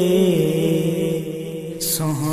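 A man singing a naat, a devotional Punjabi song, holding a long, slowly wavering note that fades a little. A brief hiss comes near the end.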